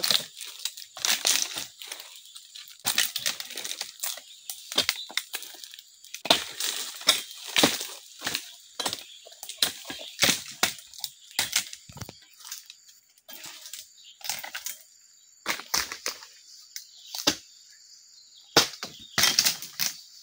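Dry oil palm fronds and leaf litter rustling and crackling in irregular bursts as they are dragged, broken and stepped on around the trunk base, with a few sharp cracks.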